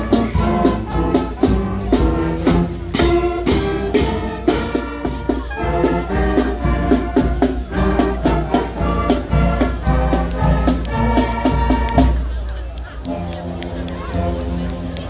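School marching band playing a march, with saxophones, trumpets and a sousaphone over a steady drum beat. The band grows fainter about twelve seconds in.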